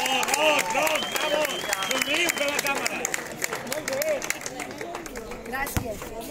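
Audience clapping, mixed with the chatter of several voices.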